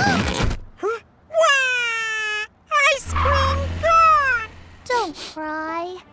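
Cartoon character voices moaning and whimpering after a fall: a string of wordless cries that slide in pitch, several drawn out and falling, after a short noisy burst at the very start.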